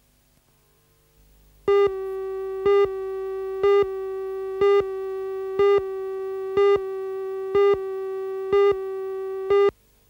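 Videotape countdown leader: a steady electronic tone with a louder beep on it once a second, nine beeps in all, starting just under two seconds in and cutting off sharply near the end.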